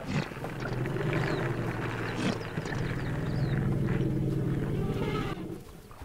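African elephants giving low, drawn-out rumbles that fade out near the end, with a few faint bird chirps above.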